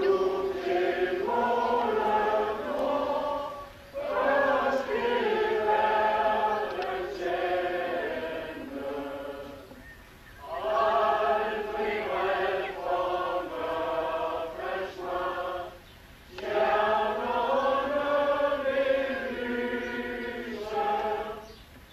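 A large group of people singing a slow song together in long phrases of about five or six seconds, with brief pauses for breath between them.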